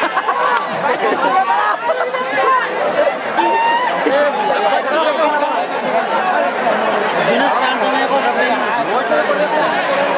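Loud crowd of many people talking and calling out at once, a continuous dense chatter with no single voice standing out.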